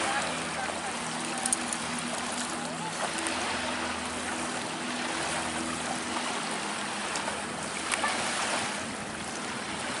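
Ocean surf washing in steadily, with a low, steady engine drone that fades out about six seconds in.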